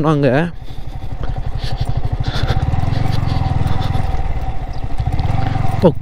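Yamaha R15 V3's single-cylinder engine running as the motorcycle rides slowly along a rough grassy track, growing louder about two and a half seconds in.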